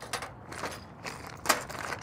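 Antenna parts and a plastic parts bag being handled and set down on a metal patio table: crinkling and short knocks, the sharpest about one and a half seconds in.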